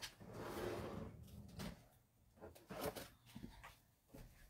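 Faint rustling followed by a few light clicks and knocks: craft supplies being rummaged through in search of a set of circle dies.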